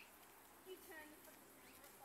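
Near silence outdoors: faint background ambience with a few faint small chirps around the middle.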